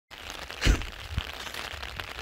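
Heavy rain pattering steadily on an umbrella held close to the microphone, with two dull bumps of handling, the louder one well under a second in.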